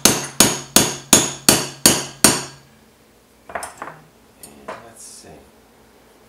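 A hammer tapping a metal rod set on a wine bottle's cork, driving the cork down to just under the rim of the glass neck. There are about seven sharp, even taps at about three a second. They stop about two and a half seconds in, and a few faint clicks and knocks of handling follow.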